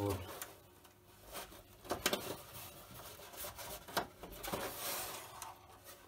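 Faint handling noise: a hand rubbing over and shifting the rigid outer shell of a silicone mould, with a few light knocks, about two and four seconds in.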